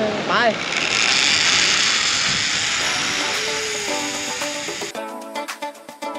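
Zipline trolley running fast along the steel cable just after launch: a loud, steady whirring hiss that slowly fades. Background music with plucked strings comes in under it and takes over completely about five seconds in.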